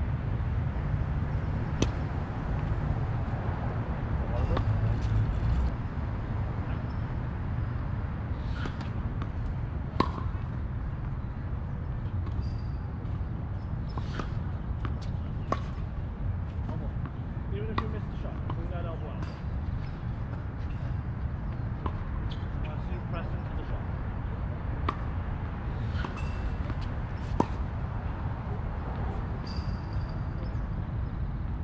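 Tennis balls being struck by racquets and bouncing on a hard court: sharp single pops every few seconds over a steady low rumble.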